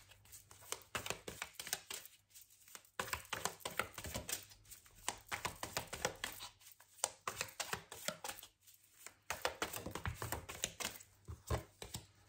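A deck of tarot cards being shuffled by hand: rapid, irregular flicking and slapping of card against card, in several runs broken by short pauses.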